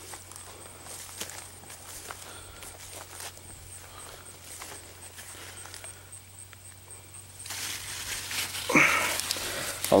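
Soft footsteps and leaves brushing while walking through a leafy brassica food plot, then, about seven seconds in, louder rustling and crackling of the broad leaves as a hand pushes down into the plants, with a short grunt-like vocal sound near the end.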